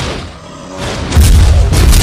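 Loud booming sound effect that starts suddenly and builds to a heavy, deep rumble about a second in, as a dragon swoops in.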